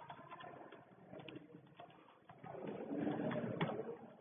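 Computer keyboard typing, a scatter of short key clicks, with a louder low cooing sound lasting about a second and a half in the second half.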